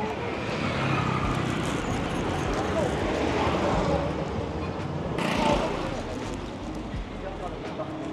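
Busy street ambience: a steady hum of motorbike and car traffic with people talking in the background, and a brief burst of noise a little after halfway.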